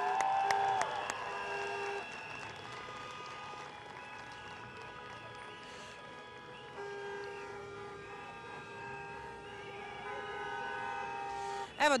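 Street protest crowd greeting arriving marchers: a few claps and whistles at first, then long steady horn blasts, one after another, over faint crowd noise.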